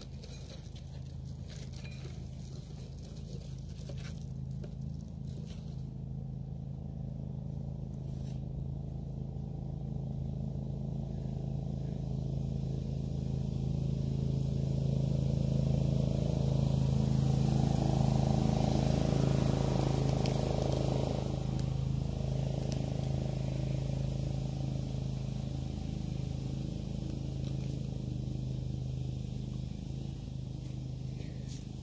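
An engine running steadily, with a low hum that swells to its loudest a little past halfway and then eases off.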